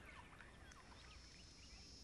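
Near silence with faint, short, high chirps of small birds, clustered in the first second or so.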